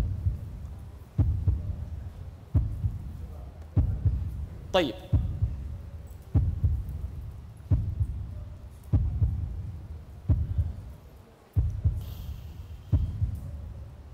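Low, heartbeat-like booms repeating about every 1.3 seconds: a suspense sound effect played while the winners' names are awaited.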